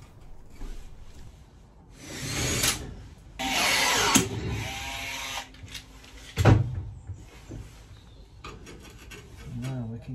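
A cordless power tool working on the aluminium frame in two bursts of about a second each, the second ending in a sharp snap, then a loud knock a couple of seconds later.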